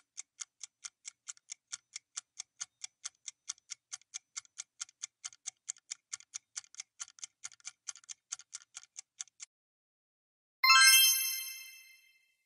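Quiz countdown-timer sound effect: fast, evenly spaced clock ticks, about four or five a second, that stop about nine and a half seconds in. About a second later a bright chime rings and fades, marking time up and the reveal of the correct answer.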